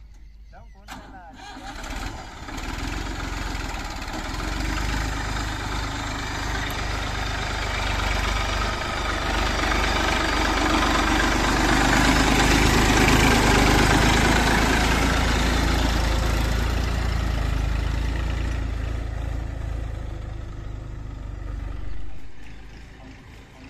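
Massey Ferguson 1035 DI tractor's diesel engine running with a deep rumble, growing louder until about halfway through and fading near the end.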